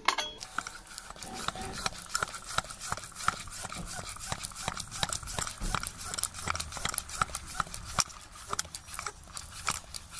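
Topeak JoeBlow Sport floor pump being worked with steady, rhythmic strokes, each a click with a short hiss of air, inflating a road-bike tyre to high pressure.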